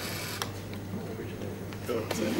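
A model crane's small electric motor driving its acrylic winch barrel during a timed lift: a faint steady mechanical hum with a sharp click about half a second in.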